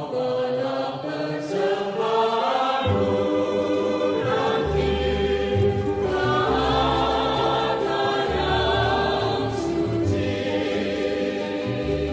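Background choral music: a choir singing slow, held notes over a low bass line.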